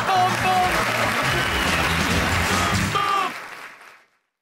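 Studio audience applause with closing music over it, fading out about three seconds in.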